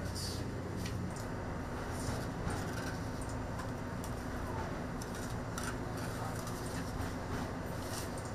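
Steady low machinery hum aboard a drilling ship, with a few light clicks from handling sediment core samples.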